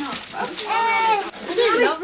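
A young child's high-pitched voice: one drawn-out squeal of about half a second, followed by shorter sounds sliding up and down in pitch.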